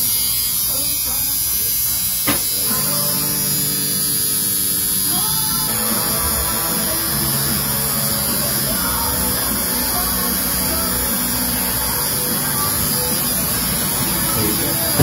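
Electric tattoo machine buzzing steadily while a small outline is tattooed on the back of a hand. Music plays along with it from about two seconds in.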